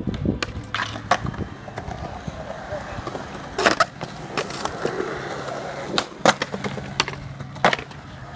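Skateboard wheels rolling on concrete, with sharp clacks of the board now and then, the loudest about halfway through and twice near the end.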